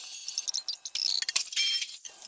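A film soundtrack played back at many times normal speed: dialogue and score squeezed into a rapid jumble of high-pitched chirps and clicks, too fast for any word to be made out.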